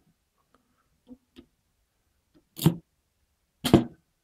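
Two sharp clacks about a second apart, after a couple of faint ticks, from a homemade magnetic spring piston: magnets and a spring inside a plastic shaker-flashlight tube, clicking as the rod is pushed down and the magnets pull together.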